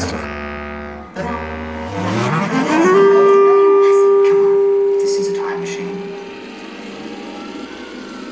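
Bass clarinet with live electronics: low sustained tones, then a rising glide into one long held note that slowly fades out.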